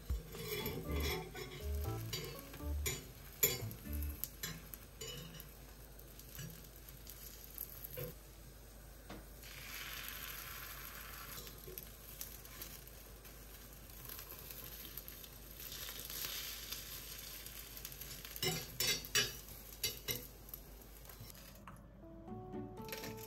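Beaten egg sizzling in a small square cast-iron rolled-omelette pan, with metal chopsticks clicking and scraping against the pan as the omelette is rolled.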